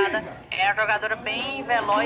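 Speech only: voices calling out, a woman's voice among them.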